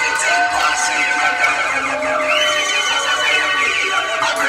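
Drum and bass DJ set playing loud over a club sound system, with several held synth tones and a high tone that comes in about halfway through.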